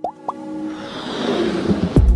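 Motion-graphics sound design over electronic music: a couple of quick rising pops, then a whoosh that swells up and ends in a deep bass hit near the end.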